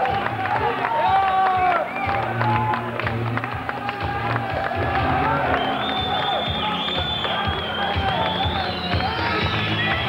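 Music playing over a loud audience that is calling out and cheering throughout.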